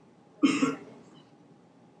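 A person coughing once, a short loud burst about half a second in.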